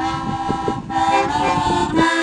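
Harmonica played in held chords, the notes shifting about a second in, with wind rumbling on the microphone underneath.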